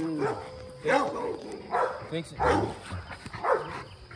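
A Rottweiler barking four times, about one bark a second, while it tugs on a bite toy.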